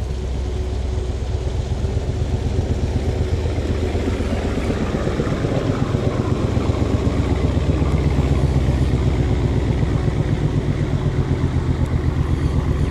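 Boat engine running steadily at constant speed, a low drone with a fast even pulse.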